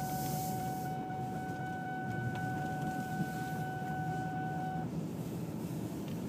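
Car interior at low speed: steady engine and road rumble in the cabin. A single steady high tone holds for about five seconds over it and then cuts off suddenly.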